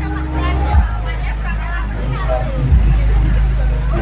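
Bass-heavy music from loudspeaker stacks mounted on a pickup truck, its deep bass note stepping to a new pitch about every two seconds, with crowd voices over it.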